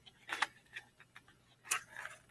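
Pages of a paperback picture book being turned by hand: two short papery rustles, about half a second in and near the end, with a few faint clicks between.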